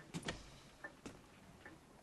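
Faint, irregular light clicks and knocks, about half a dozen, spread unevenly through a quiet room.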